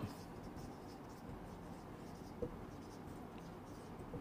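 Faint rub and squeak of a marker pen writing on a whiteboard, with one small click a little past the middle.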